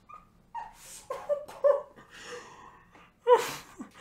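A person laughing in short, breathy bursts, the loudest near the end.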